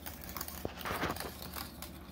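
Wire whisk stirring thick, creamy cooked grits in a stainless steel saucepan: soft wet stirring with light clicks and scrapes of the wires against the pot.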